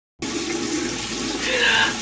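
Bathroom sink tap running steadily, starting just after a moment of silence, with a short vocal exclamation about a second and a half in.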